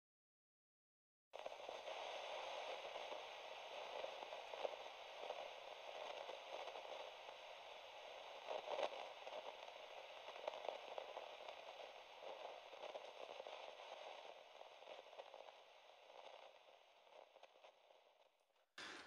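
Faint crackling static hiss that starts about a second in and slowly fades away near the end.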